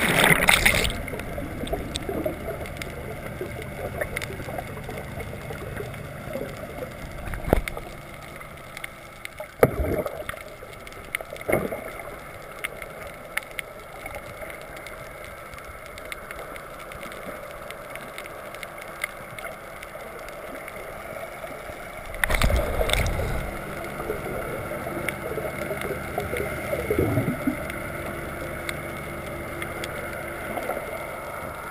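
Muffled underwater sound picked up by a snorkeller's camera in its waterproof housing: a steady low rush of water with a faint hum, a few scattered knocks and gurgles, and a louder surge of bubbling water about two-thirds of the way through.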